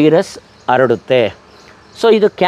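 A man speaking in short phrases with a pause near the end. No other sound stands out.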